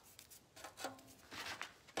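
A few faint, short scrapes and rubs as burnt glue and paper residue is picked off the edges of a decoupaged metal flower petal.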